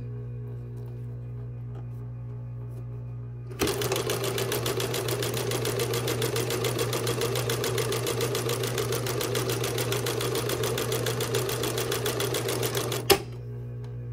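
A 1961 Singer Sew Handy child's electric sewing machine, a single-thread chain-stitch machine with no bobbin, starts about three and a half seconds in and runs steadily with a rapid, even stitching rhythm while sewing a seam through two layers of fabric. It stops with a click about a second before the end.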